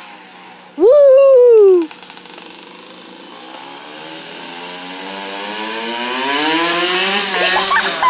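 Dirt bike engine approaching down the street, its pitch and loudness climbing steadily over several seconds as it revs up. A brief loud falling tone cuts in about a second in.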